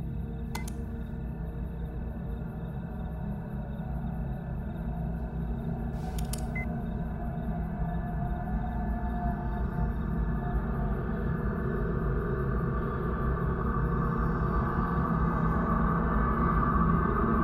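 Dark suspense film score: a low, sustained drone that swells steadily louder. Two soft computer-mouse clicks come through, one about half a second in and one around six seconds in.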